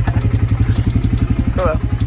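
ATV (quad bike) engine running close to the microphone while riding, a loud, even, rapid pulsing. A short laugh comes near the end.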